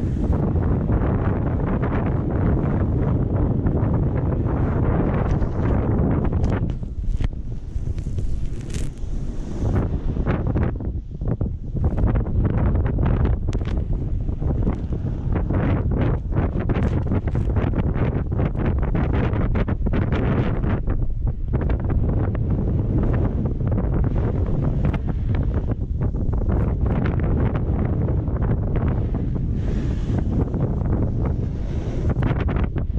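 Wind buffeting the microphone of a camera moving fast down a ski slope: a loud, steady low rumble, broken by many short scraping hisses of snow under the rider.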